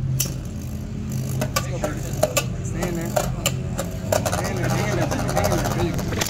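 Two Metal Fight Beyblade tops, Flame Kerbecs 230MB and Rock Kerbecs D:D, spinning on a plastic stadium floor: a steady whir, broken by many sharp clicks as the metal tops strike each other and the stadium wall.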